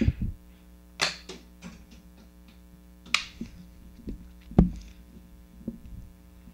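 Plastic toy gun being clicked: a handful of scattered sharp clicks, with one louder thump about two-thirds of the way through. A steady electrical hum runs underneath.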